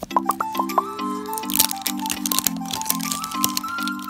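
Crackling and clicking of plastic candy-toy packaging and its capsule being torn open and handled, over light background music.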